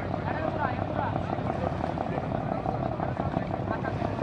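Several people's voices talking indistinctly in the background over a steady, engine-like low hum.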